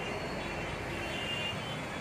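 Steady background hum of street traffic outside a roadside shop.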